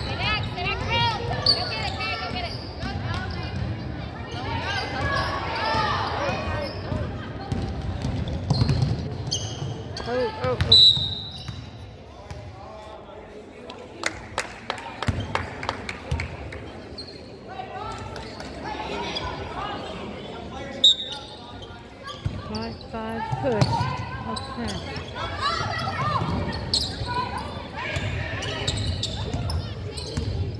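Girls' basketball game in a gym: the ball bouncing on the hardwood as it is dribbled, sharp sneaker squeaks, and players and spectators calling out, all echoing in the hall. Play pauses a little under halfway through and it goes quieter for several seconds before the bouncing and voices pick up again.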